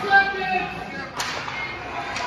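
One sharp crack of a hockey stick striking the puck a little past halfway, with a short echo after it, over voices calling out.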